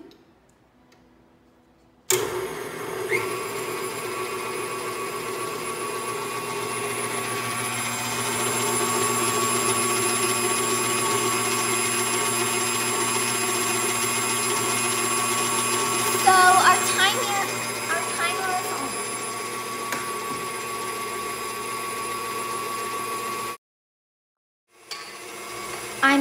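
Electric tilt-head stand mixer running steadily on medium speed, its beater creaming softened butter in a stainless steel bowl. The motor whine starts suddenly about two seconds in and cuts off abruptly near the end.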